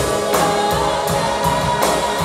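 Live rock band playing: electric guitars, bass and drums, with held, sustained singing over them and cymbal crashes soon after the start and again near the end.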